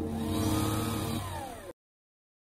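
Intro sound effect of a robot arm moving: a mechanical whir with a pitch that glides downward as it fades, stopping abruptly shortly before the end.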